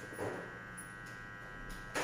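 Quiet room with a faint, steady electrical buzz, and two soft brief sounds, one near the start and one at the end.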